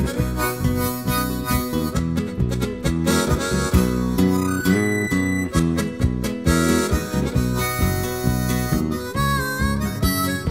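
Instrumental break of a country-folk song: harmonica playing the melody over strummed acoustic guitar.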